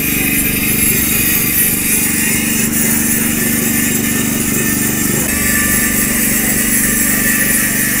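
Handheld electric power tool grinding the carved lettering off a polished granite plaque, a steady unbroken grinding, with a portable generator's engine running underneath.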